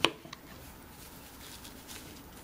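A sharp click right at the start, then a faint tick, then quiet handling noise as jute rope is pressed against a glass vase by hand.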